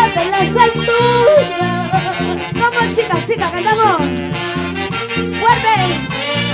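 Live Peruvian band music: saxophones carry the melody over electric bass, drums and harp, with a steady beat and no singing in this passage.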